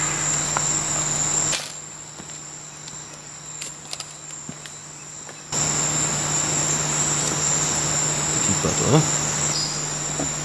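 Tropical forest insects trilling: a steady, high-pitched drone with a low hum beneath. It drops away between about a second and a half and five and a half seconds in, leaving a quieter background with a few faint clicks, then comes back.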